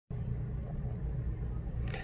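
Steady low background rumble with no speech, and a short breath in near the end.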